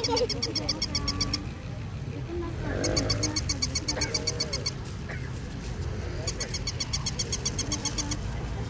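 Battery-operated walking toy puppy sounding off in three bursts of rapid, evenly repeated high electronic yaps, each about two seconds long: near the start, in the middle and near the end.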